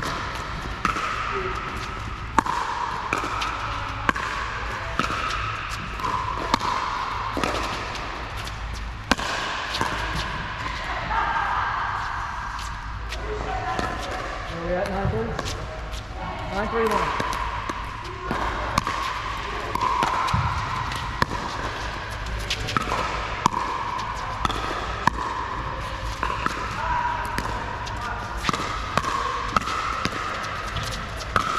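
Pickleball paddles hitting a hard plastic pickleball, sharp pops at uneven gaps of a second or two, carrying in a large indoor court hall.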